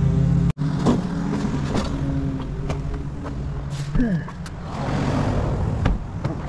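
A pickup truck's engine idling steadily, with a few light clicks and handling noises. The sound drops out for an instant about half a second in.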